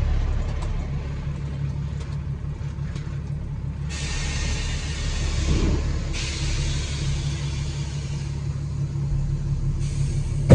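Kenworth dump truck's diesel engine idling steadily, heard from inside the cab. A hiss lasts about two seconds around the middle.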